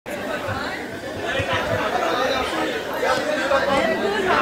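Chatter of several people talking over one another, with no single voice standing out.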